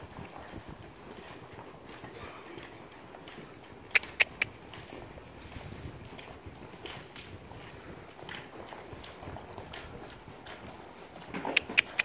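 Hoofbeats of several saddled horses walking on arena sand, with a pair of sharp clicks about four seconds in and a quick run of sharp clicks near the end.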